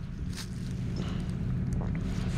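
Tractor engine idling with a low, steady hum, with faint rustles and a few soft clicks from a rapeseed plant being handled.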